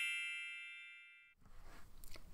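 Tail of a bright, bell-like logo chime, several tones ringing together and dying away steadily until it fades out a little over a second in, followed by faint room tone.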